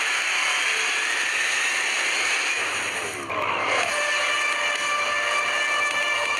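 Logo-reveal intro sound effects: a steady rushing whoosh of noise, then a swooshing sweep a little over three seconds in. Held musical tones come in after the sweep.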